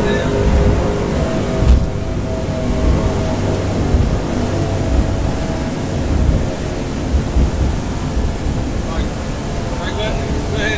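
Twin 350-horsepower outboard engines running hard under way, a steady multi-tone drone over water rush, with irregular low buffeting.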